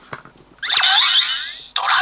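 Electronic battle sound effects: a burst of warbling, falling electronic tones about half a second in, then another burst starting near the end.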